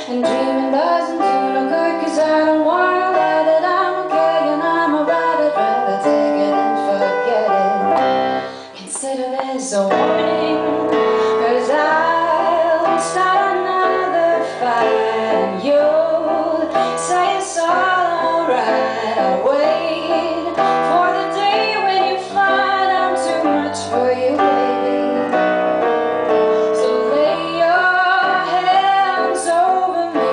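A woman singing a pop ballad live, accompanied by piano, with one brief break about nine seconds in.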